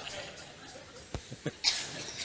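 A pause in a man's speech, filled with quiet mouth noises: a sharp click a little over a second in, then a short breath or cough-like hiss near the end.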